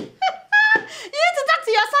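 A woman laughing and exclaiming in drawn-out cries that hold and glide up and down in pitch, with a sharp click right at the start.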